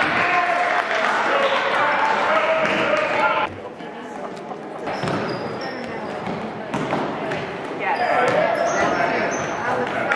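Basketball dribbling and bouncing on a hardwood gym floor, with indistinct voices calling out, ringing in a large gym. The voices drop away about three and a half seconds in and pick up again near the end.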